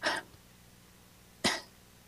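A short breathy sound at the start, then a single brief cough about one and a half seconds in, from a person on a video-call line; between them the line goes dead silent.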